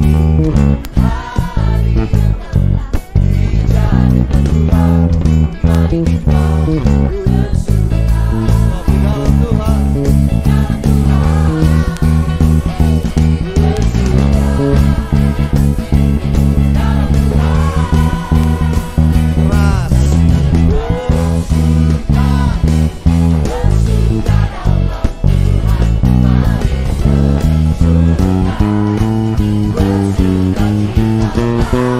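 Pedulla MVP5 five-string electric bass playing the verse bass line along with a recorded worship song: a full band with a lead singer.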